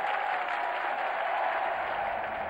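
Large audience applauding, an even patter of many hands clapping, with a thin steady tone running through it for the first second or so.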